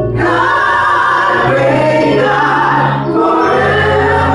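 A gospel praise team of women's and a man's voices singing together in harmony through microphones, over steady low held notes, with a brief break in the singing about three seconds in.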